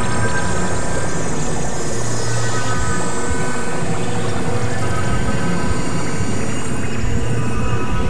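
Experimental electronic drone music: layered, sustained synthesizer tones over a dense, noisy texture, with a low hum that swells and drops out every second or so.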